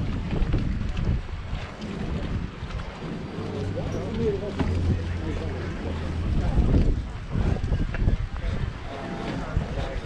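Wind buffeting the microphone, with voices of passers-by in the background. A low steady hum runs for a couple of seconds in the middle.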